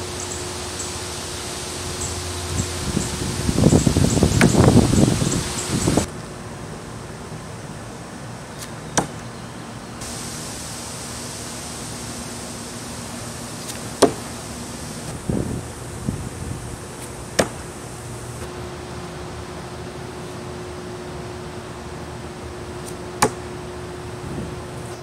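Thrown double-bit axe striking a wooden log target: four sharp thunks several seconds apart, one per throw. Before the first, a louder rough burst of noise lasts about two seconds.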